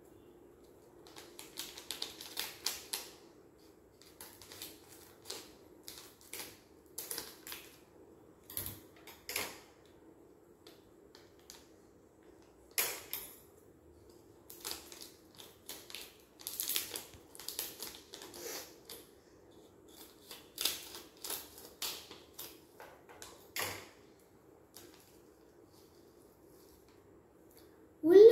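Scissors snipping and a chip packet crinkling as it is cut open: faint, irregular clicks and rustles with pauses between them, stopping a few seconds before the end.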